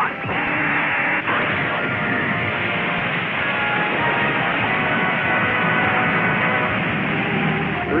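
Cartoon sound effect of a fire-extinguisher jet spraying: a steady rushing hiss that starts just after the command. Background music with held notes plays under it.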